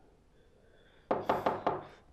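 Knocking on a door: a quick run of several knocks starting about a second in.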